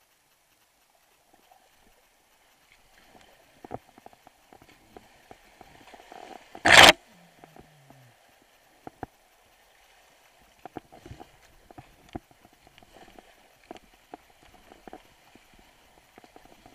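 A kayak and paddle moving through a creek riffle: scattered knocks and taps of paddle and boat, with splashing water, beginning after a couple of quiet seconds. One loud, short splash-like burst comes about seven seconds in.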